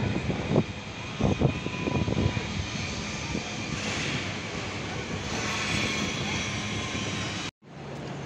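A steady engine drone with a low hum, its hiss growing stronger about halfway through; it cuts off abruptly near the end.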